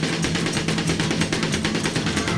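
Instrumental passage of a 1970s Italian rock-pop studio recording: full band with drum kit playing a fast, busy pattern over bass and sustained chords, dense and loud.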